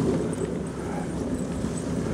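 Dog sled running over packed snow behind a team of eight huskies: a steady rushing noise of the runners on the snow mixed with the patter of the dogs' paws.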